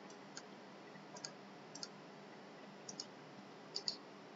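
Computer mouse button clicked several times, mostly as quick double clicks of press and release, faint over a low background hiss.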